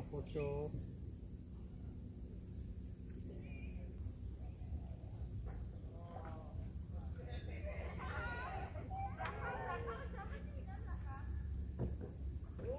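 A rooster crowing across the water from about six seconds in, over a low steady hum, with voices in the background.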